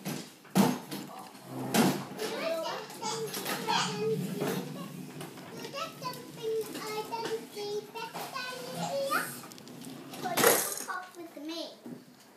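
Children's voices chattering and exclaiming, with no clear words. A few sharp knocks stand out, the loudest about ten and a half seconds in.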